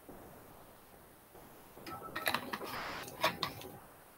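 Near-silent room tone, then a cluster of soft clicks and light rustling picked up close by a headset microphone about halfway in, with the loudest click about three-quarters of the way through.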